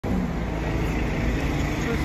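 A single-deck city bus passing close by at the kerb, its engine running with a steady low rumble over street traffic.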